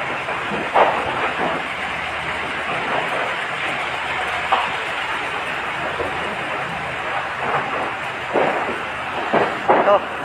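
Fire truck engine running at close range, a steady, even rumble and hiss, with a few brief voices over it.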